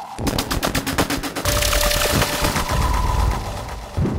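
Patched analog synthesizers (Behringer 2600, Pro-1 and Studio Electronics Boomstar) playing a harsh, noisy sequence. It opens with a rapid train of sharp clicks, about ten a second, then turns to dense noisy bursts over a low rumble, with a couple of steady held tones.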